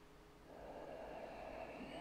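A man's quiet, slow in-breath, starting about half a second in and growing steadily louder.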